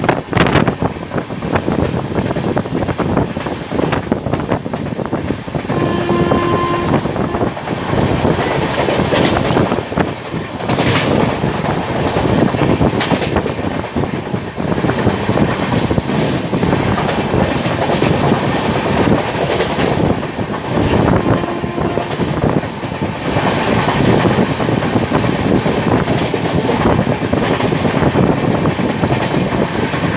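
An express train running at high speed, heard from an open coach doorway: a steady rushing roar crossed by the clickety-clack of wheels over rail joints. A train horn sounds once for about a second, about six seconds in, and briefly and more faintly again a little after twenty seconds.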